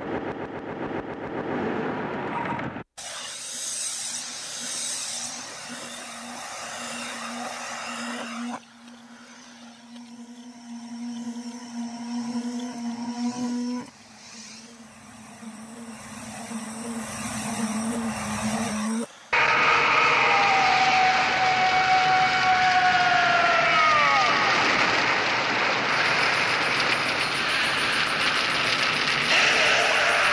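Noise-based passage of an industrial electronic track: hissing, machine-like noise that changes abruptly every few seconds, with a steady low hum through the middle. From about two-thirds of the way in comes a loud, rushing noise with whistling tones that slide down in pitch.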